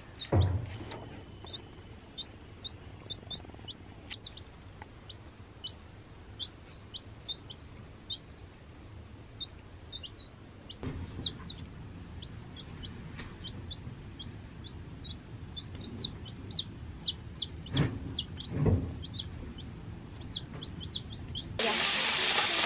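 Baby chicks peeping: a run of short, high cheeps, sparse at first and busier and louder over the last few seconds, with a few soft knocks. Near the end it cuts to a steady sizzle of food frying on a hot griddle.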